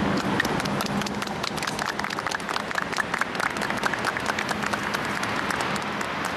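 A small group of people clapping by hand: many quick, overlapping claps that start about half a second in and thin out near the end.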